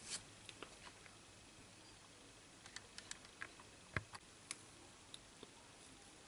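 Near silence with faint, scattered small clicks and taps, the sharpest about four seconds in: alligator-clip test leads being handled as an LED is unclipped from the component tester.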